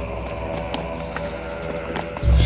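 Dramatic background music score: sustained tones over a pulsing bass, with two brief clusters of high, falling whistle-like sweeps.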